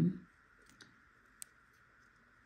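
A single short, sharp click a little past halfway through as a small round TFT display circuit board is handled and turned over in the fingers, with a couple of fainter ticks before it, over a faint steady hiss.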